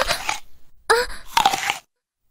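A person's wailing cries, rising sharply in pitch: a short one at the start and a longer one about a second in.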